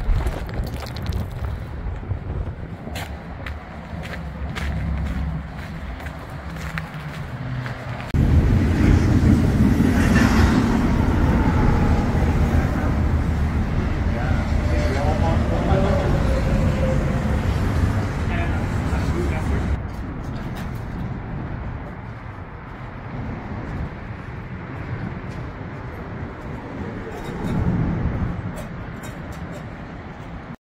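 Freeway traffic noise, steady and low-pitched, much louder for about twelve seconds from around eight seconds in, then easing off.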